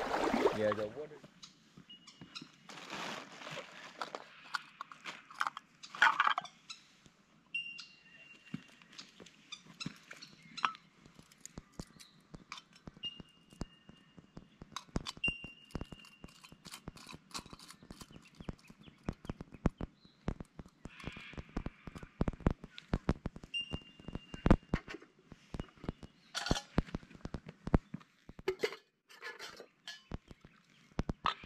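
Clicks, knocks and rustling of camp cooking gear and a plastic food bag being unpacked and set down on rock, in many short irregular sounds. A few short high whistling tones come in between.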